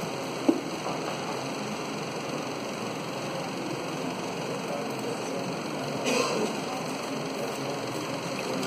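A chalkboard being wiped with a felt duster over steady classroom background noise, with a single knock about half a second in.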